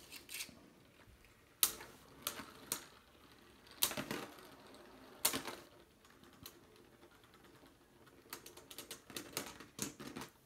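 Two Beyblade Burst spinning tops knocking together in a plastic stadium: sharp separate clacks a second or so apart, then a quicker run of clacks near the end.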